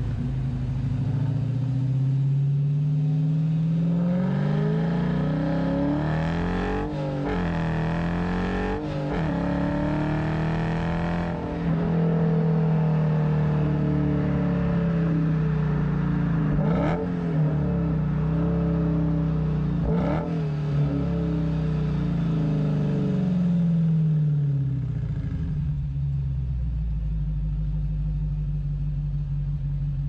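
Dodge Challenger Scat Pack's 392 (6.4-litre) HEMI V8 heard at the exhaust tip through its stock, still-muffled exhaust while driving. The engine note rises and dips several times, holds a steady cruise, then falls back to a low idle near the end.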